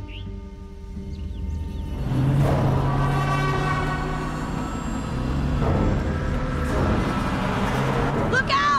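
An SUV's engine growing loud about two seconds in as it drives toward the camera, mixed with tense film music.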